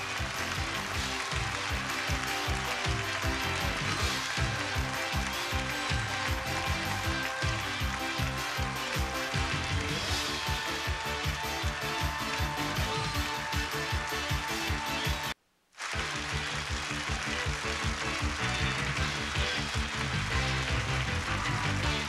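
Upbeat game-show theme music with a steady beat, which cuts out abruptly for half a second about two-thirds of the way through and then picks up again.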